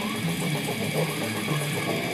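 Electric guitar playing a fast, low death-metal riff of short, rapidly changing notes.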